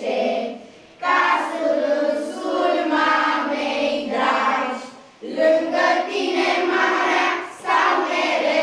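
A group of young children singing a song together in sung phrases, with short breaks about a second in and about five seconds in.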